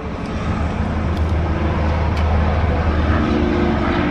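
Steady low rumble of motor-vehicle noise under an even background hiss.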